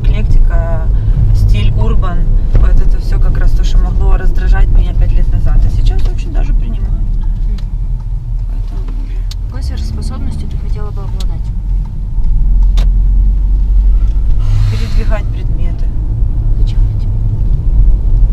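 Cabin noise of a Toyota car being driven: a steady low rumble of road and engine under a woman's talking, swelling louder about two thirds of the way in, with a brief rushing hiss near the end.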